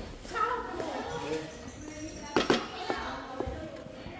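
Faint voices talking, with a sharp knock of cookware about two and a half seconds in and a lighter one just after, while rice is stirred in a large metal pan with a wooden spoon.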